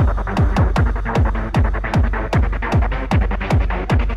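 Hard house dance music: a kick drum on every beat at about 150 beats a minute, each kick dropping in pitch, with hi-hats on the offbeats and a dense synth riff over the top.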